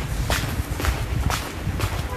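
Brisk footsteps of a person walking fast on a hard floor, about two steps a second, over a steady low rumble.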